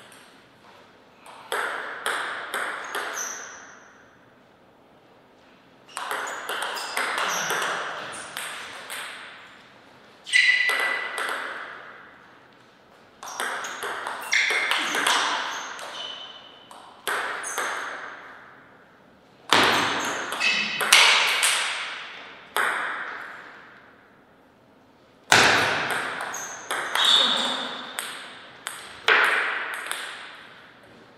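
Table tennis rallies: the ball clicks off paddles and table in quick runs of hits, in about seven bursts separated by short pauses between points.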